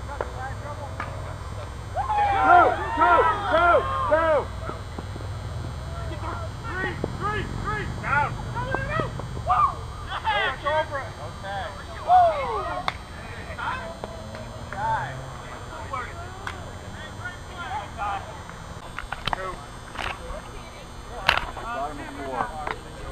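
Softball players' voices calling and chattering across the field, several at once and indistinct, loudest about two to four seconds in. A few sharp clicks come near the end.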